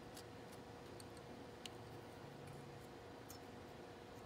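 Near silence with a faint steady hum and three light ticks, the metal tips of multimeter test probes touching the pins of a Hubbell plug.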